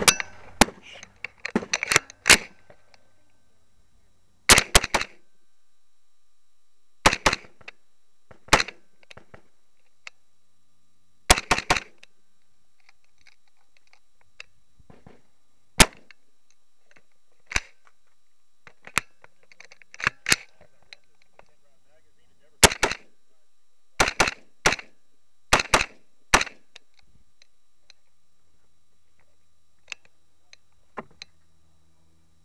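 A carbine firing close to the microphone, about thirty shots in quick strings of two to five, each string separated by a pause of one to three seconds.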